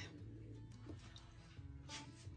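Faint background music with soft held notes.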